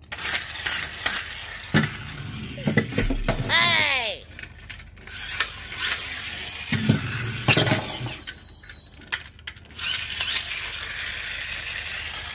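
Clicks, knocks and rattles from a plastic toy monster-truck train with rubber tyres being handled. A whistle-like tone falls in pitch about a third of the way in. A steady high tone sounds for a second and a half past the middle.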